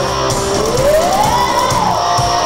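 Live rock band playing, with electric guitars and drum kit, heard through a camcorder microphone. A held lead note slides up in pitch about half a second in, holds, and falls back near the end.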